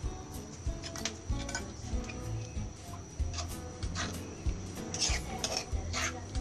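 Metal spoon clinking and scraping against a stone mortar as a liquid chili dipping sauce is stirred, with a run of sharper clinks about five seconds in.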